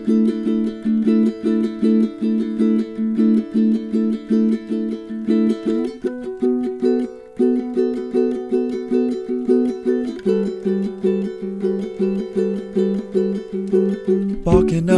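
Instrumental passage of an acoustic song: a plucked string instrument strums chords in a steady, even rhythm, with chord changes about six and ten seconds in.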